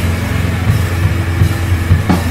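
Rock music with a steady, heavy low bass drone.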